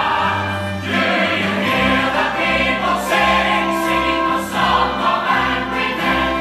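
Full stage-musical cast singing together as a choir over orchestral accompaniment, with sustained held notes above a steady bass line.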